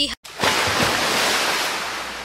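Ocean waves sound effect: one surge of surf noise that starts about a third of a second in, after a short silence, and slowly fades.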